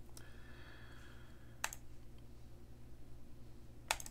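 Two computer mouse clicks, the first about a second and a half in and the second near the end, over a faint steady hum.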